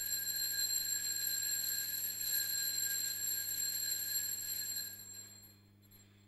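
Small altar bells ringing continuously at the elevation of the host, marking the consecration, then dying away about five seconds in.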